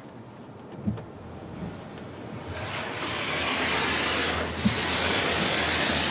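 Automatic car wash spraying soap onto the car, heard from inside the cabin. Over a low hum there is a knock about a second in, then a hiss of spray that swells from about halfway through as the spray reaches the car.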